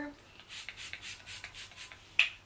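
Smashbox Photo Finish Primer Water face-mist spray bottle pumped several times in quick succession: short, high-pitched hissing sprays.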